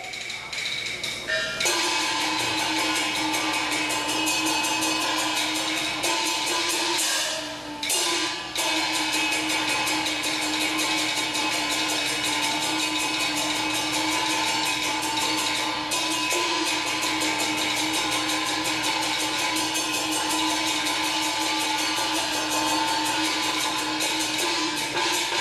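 Taiwanese opera (gezaixi) stage accompaniment: fast, steady percussion strikes under sustained instrumental tones, with a short break about eight seconds in.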